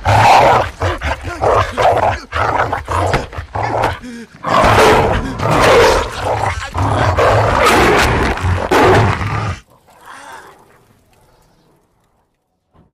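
A wolf snarling and growling as it attacks, in loud, irregular bursts that stop abruptly about nine and a half seconds in.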